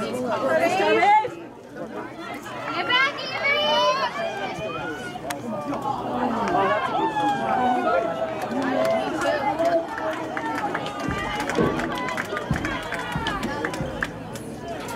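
Overlapping voices of players and spectators shouting and calling out across an outdoor soccer field, with no clear words. Two low thumps come near the end.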